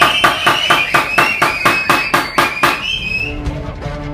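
Rapid, evenly timed hand clapping, about six claps a second, with a long high held tone over it. It stops about three seconds in and closing theme music begins.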